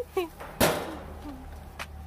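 Gas grill's metal lid shut down: one loud bang a little over half a second in, with a short ring-out. A smaller click follows near the end.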